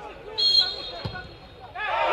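Referee's pea whistle, one short high blast about half a second in: the signal that the penalty kick may be taken. A single dull thud follows about a second in, and voices of players and crowd rise sharply near the end.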